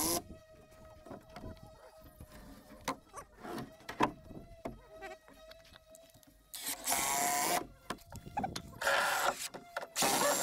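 Cordless drill-driver driving screws into timber framing in two short bursts, the first about two-thirds of the way in and the second near the end. Before them, scattered knocks and clicks of wood being handled.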